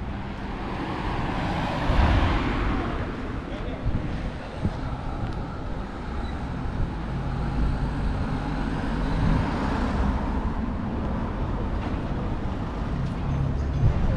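Town street ambience: traffic on the seafront road, with a vehicle going past loudest about two seconds in, and people's voices from the café terraces.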